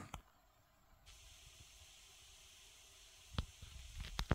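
Near silence: room tone, with a faint click just after the start and a sharper click about three and a half seconds in.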